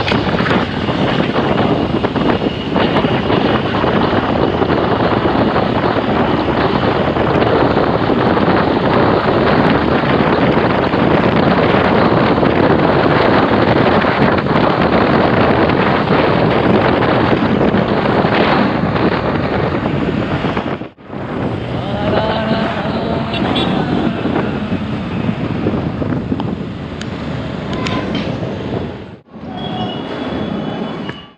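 Wind rushing over the microphone of a motorcycle riding at highway speed, about 84 on the speedometer, mixed with engine and road noise. It cuts off suddenly about 21 seconds in, giving way to a somewhat quieter stretch of traffic noise with a few faint pitched sounds, then cuts again near the end.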